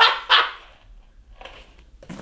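A man laughing: two short breathy bursts of laughter right at the start, fading out within about half a second, followed by faint rustling.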